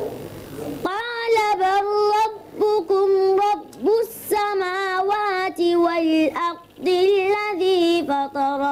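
A young boy chanting Quranic recitation in Arabic, in long held notes with a wavering, ornamented pitch. The phrases are broken by short pauses for breath, the first lasting until about a second in.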